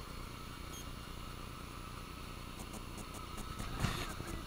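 Golden retriever digging in loose garden soil, faint scrabbling over a steady low background hum, with one brief louder scuff near the end.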